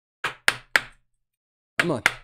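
Three quick, sharp taps about a quarter second apart: a rigid plastic card holder knocked against the tabletop to work a thick trading card down into it. More taps come near the end.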